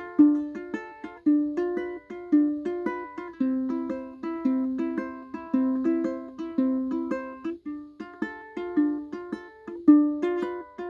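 Ukulele with a clear plastic body strummed in a steady rhythm of chords, about two or three strums a second, each chord ringing out and fading before the next.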